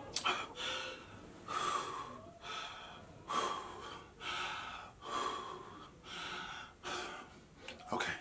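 A person gasping for breath, with heavy breaths in and out about once a second.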